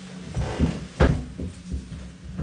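Dull thumps and knocks of a person climbing from a wheelchair into a bathtub, knees, hands and body bumping the tub's rim and side, with one sharp knock about a second in.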